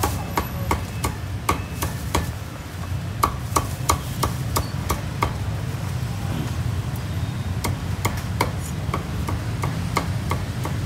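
Cleaver chopping crisp-skinned roast pork on a thick round wooden chopping block: sharp strokes at about two to three a second, pausing briefly a couple of seconds in and for about two seconds past the middle.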